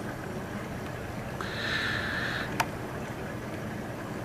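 Steady low rush of a reef aquarium's running pumps and water circulation. A faint hiss lasts about a second, starting a little after a second in, and a single sharp click comes about two and a half seconds in.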